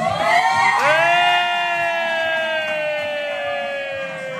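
Women shrieking with delight: a long, high squeal held for several seconds that slowly falls in pitch, with other voices joining in briefly near the start.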